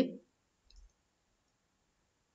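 A couple of faint computer-mouse clicks just under a second in, otherwise near silence.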